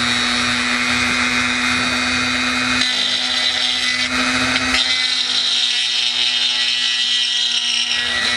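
Dremel 300 rotary tool running at mid speed with a steady high whine, its bit grinding and melting through a plastic model-kit panel; the cutting noise shifts as the bit bears on the plastic, about three and five seconds in.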